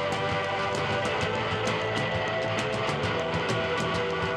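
Live indie rock band playing: strummed electric guitar over a full drum kit, with a steady beat of drum and cymbal hits under sustained chords.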